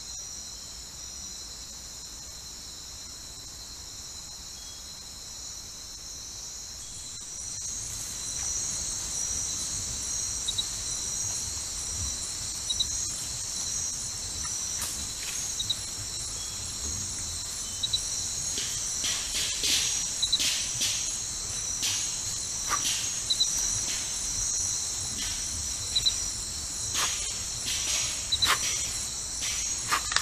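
Night insect chorus: steady, high-pitched trilling of crickets, which grows fuller and louder about seven seconds in. From about halfway, scattered sharp clicks and snaps sound over it.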